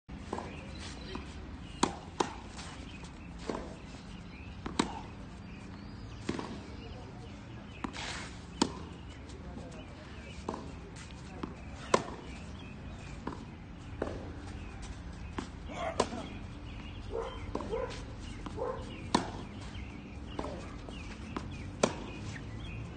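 Tennis rally on a clay court: sharp racket-on-ball hits every one to two seconds, some much louder than others, over a steady low background hum.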